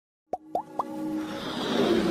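Intro sound effects for an animated logo: three quick plops, each bending upward in pitch, about a quarter second apart, then a whoosh with held musical notes that grows steadily louder.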